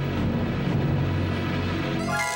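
Background music from the drama's score: a low, rumbling suspense drone held steady, with no speech.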